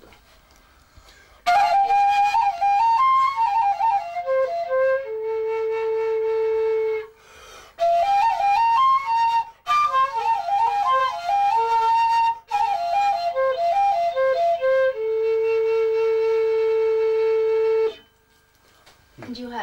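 Chinese dizi bamboo transverse flute played solo, starting about a second and a half in. It plays three ornamented melodic phrases with quick runs, with short breaks between them. The first and last phrases each settle onto a long held low note.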